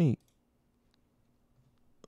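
A few faint computer mouse clicks in near silence, one about a second in and a couple near the end.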